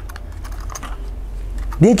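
Light, scattered clicks and taps of a small folded metal backpacking gas stove being fitted into its small plastic carrying box.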